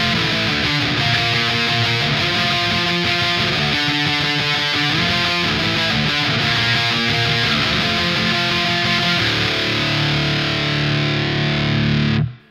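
Distorted electric guitar strumming octave chords in an even, rapid rhythm, the chord shape moving between frets every second or so. For the last few seconds it stays on one lower chord.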